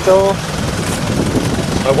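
A motor vehicle's engine idling, a steady low rumble.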